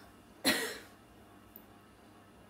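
A single short cough about half a second in, starting abruptly and dying away quickly.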